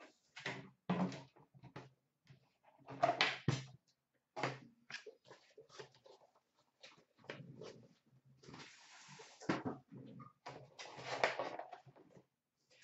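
Boxes and card packs being handled on a counter: a scattered run of clicks, knocks and light rustles, with a longer rustle of wrapping or tearing about nine seconds in.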